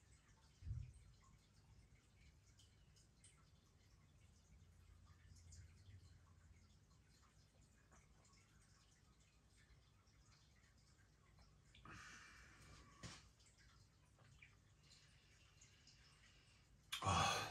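Near silence while a man sips beer and tastes it, with a faint swallow about a second in and a soft breath out about twelve seconds in.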